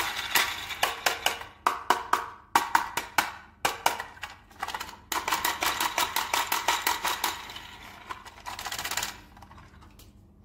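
Toy unboxing handling sounds: a run of sharp clicks and taps, then a dense crackling stretch from about five to nine seconds in that fades out.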